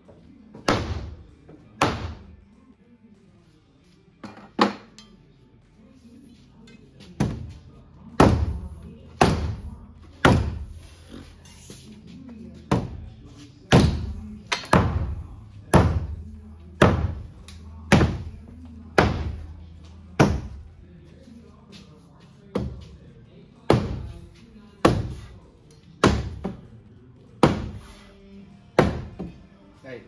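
Hammer blows on a steel pry bar wedged into wooden framing, knocking a door header loose: about twenty sharp, ringing strikes, roughly one a second, growing heavier after the first few seconds.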